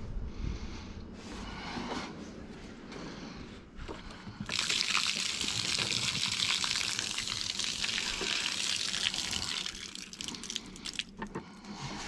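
Water being poured out of a dehumidifier's plastic collection tank: a steady splashing pour of about five seconds that starts a little after a few light handling knocks and breaks up into last spatters near the end.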